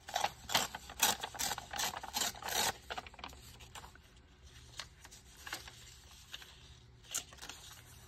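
Paper rustling and crinkling as hands handle and position pieces of craft paper, with a busy run of crackles in the first few seconds, then fainter occasional rustles and clicks.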